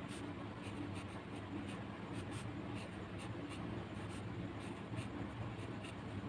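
Pen scratching faintly on notebook paper in short, irregular strokes as handwriting is written, over a low steady hum.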